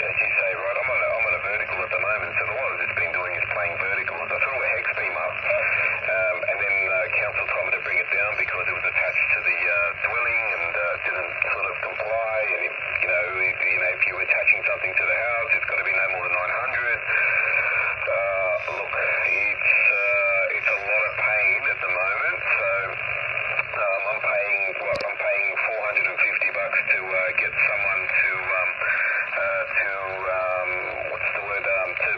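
Single-sideband voice on the 40-metre band coming through the speaker of a Yaesu FT-817-family transceiver. The speech is narrowed to a thin, telephone-like band over a steady hiss of static. One sharp click comes near the end.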